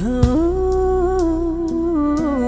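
A woman sings one long wordless note that slides up into pitch near the start and is then held, over a karaoke backing track.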